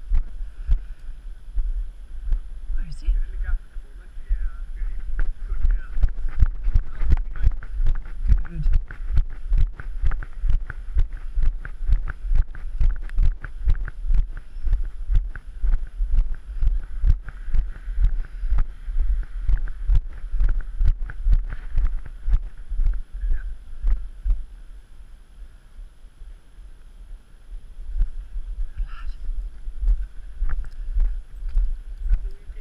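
Footsteps of a person walking briskly on a pavement, a steady run of short knocks that eases off for a few seconds near the end, with wind buffeting the microphone.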